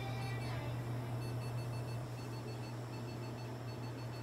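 Steady low electrical hum, with a faint, rapid train of short high-pitched beeps repeating evenly at a fixed pitch.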